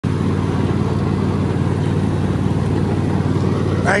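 Cub Cadet XT1 LT46 riding lawn mower's engine running steadily while the mower is driven along. A man's voice starts just at the end.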